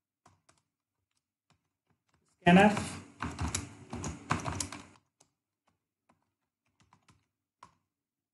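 Scattered single keystrokes on a computer keyboard, a few at a time, as code is typed. A louder stretch of a person's voice without clear words cuts in from about two and a half to five seconds in.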